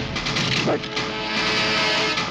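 Loud action-film background score, dense and driving, with a brief rising glide about two-thirds of a second in.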